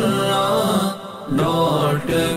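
A melodic vocal chant over music, part of a short closing jingle. It is a held, sung phrase that dips briefly about a second in, then resumes.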